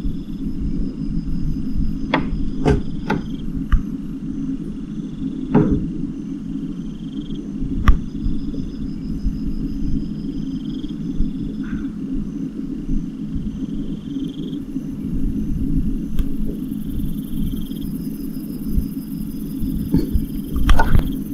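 A steady low hum, with a high, insect-like chirping that repeats evenly throughout and several sharp clicks in the first eight seconds.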